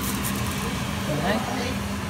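A steady low machine hum, like a running kitchen appliance, with faint voices in the background.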